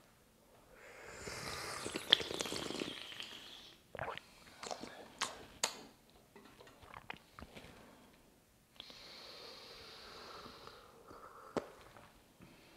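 Two quiet slurping sips of tea from small tasting cups, a few seconds apart, with a few light clicks in between.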